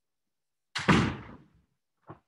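A single loud bang about three-quarters of a second in, dying away over about half a second, heard as a minor interruption to the lecture.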